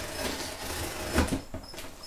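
A cardboard box being handled and opened by hand: scraping and rustling of cardboard, with a sharper knock about a second in.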